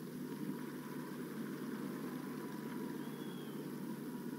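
Low, steady background noise of a large stadium gathering picked up by the podium microphones, with a faint steady high tone.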